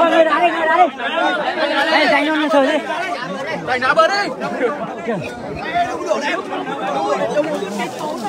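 Speech only: several people talking at once, a crowd's chatter.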